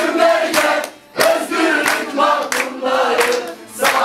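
A group of men and women singing together while clapping their hands in a steady beat, a little under two claps a second. The singing breaks off briefly about a second in and again near the end, between lines.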